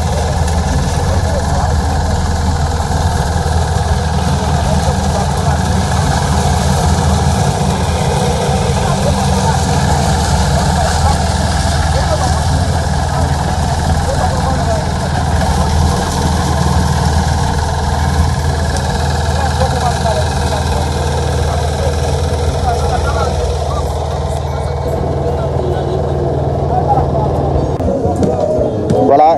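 Small engine of a portable concrete mixer running steadily, under the chatter of many voices from a crowd.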